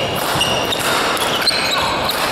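Badminton doubles rally: sharp racket strikes on the shuttlecock and short high squeaks of court shoes on the floor, over a steady hum of hall noise.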